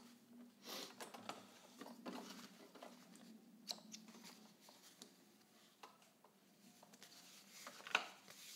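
Faint handling sounds as fabric and thread are pulled out from under a sewing machine's presser foot: soft rustles and small clicks, with one sharper snip about halfway through as scissors cut the thread.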